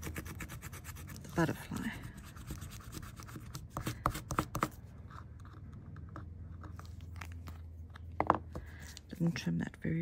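Paper stump rubbing back and forth over metal foil tape on a tag, smoothing it flat around an embossed die-cut pattern: a rapid run of short strokes, densest in the first couple of seconds, with a few sharper scrapes about four seconds in.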